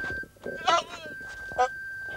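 A goat bleating: one loud call with a quavering pitch less than a second in, then a short second call about halfway through. A thin steady high-pitched whine runs underneath.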